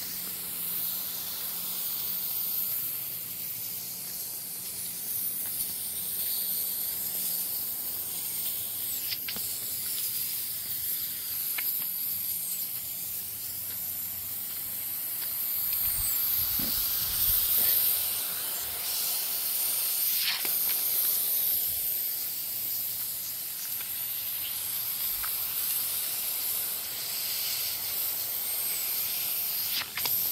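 Pop-up lawn sprinkler spray heads hissing steadily as they spray water over the grass, a zone of an automatic irrigation system running.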